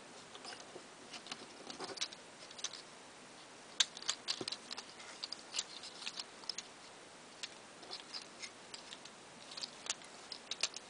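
Faint, irregular plastic clicks and ticks from the parts of a Transformers Generations Scoop action figure as they are twisted and snapped into place during transformation. The clicks come thickest from about four to six and a half seconds in.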